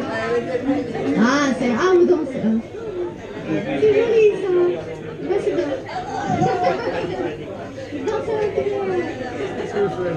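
Indistinct chatter of several people talking at once in a room, with no music playing.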